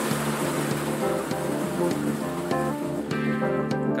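Maple sap gushing and splashing into a steel storage tank as a sap extractor dumps its load, over background guitar music. The rush of liquid thins out near the end.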